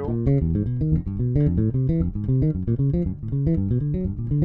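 Electric bass guitar played fingerstyle, running an arpeggio exercise: a quick, even stream of plucked notes climbing and falling in pitch.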